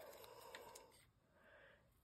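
Near silence, with faint rustling of paper and scissors being handled in the first second and one small tick about half a second in.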